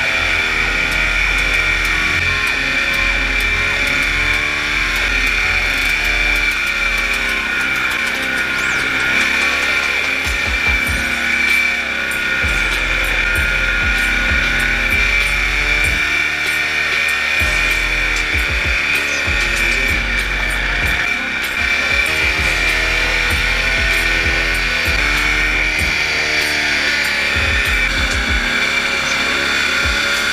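Paramotor engine and propeller running steadily in flight: a loud, even, high-pitched drone whose lower tones slowly waver up and down in pitch, with a low rumble of wind on the microphone.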